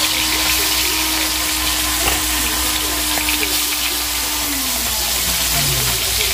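Singi catfish frying in hot oil in a kadai, a steady sizzle. Under it a low steady tone slides down in pitch near the end.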